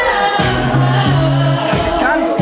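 A girl singing into a handheld microphone over amplified backing music with a held bass line.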